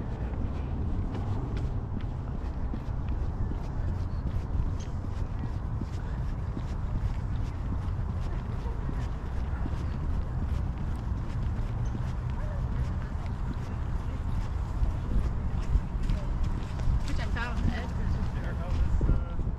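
Wind rumbling on the action camera's microphone while its holder runs, with faint footfalls of running on a paved path.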